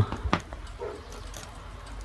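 Burning paper in a metal dish, giving a sharp click about a third of a second in and a few faint ticks over a low hum.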